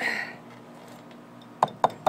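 Chef's knife chopping into a husked coconut: a short scraping stroke at the start, then two sharp knocks near the end as the blade strikes the hard inner shell beneath the fibrous husk.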